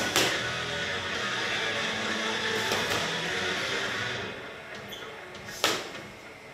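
Background music, over which gloved punches smack into focus mitts a few times. One sharp smack comes just after the start and the loudest comes near the end.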